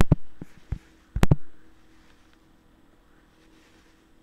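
Computer mouse clicking: about six sharp clicks in the first second and a half, some in quick pairs.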